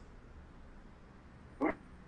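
Quiet room tone in a hall, broken by one short vocal sound from a person, a brief murmur, about one and a half seconds in.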